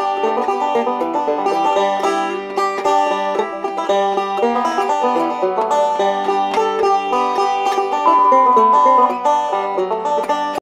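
Background music: banjo picking a bluegrass-style tune as a rapid run of plucked notes, with one longer held note near the end.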